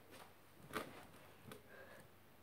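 Faint room tone with about three soft knocks and rustles from a person moving about and settling in, handling something as she sits down.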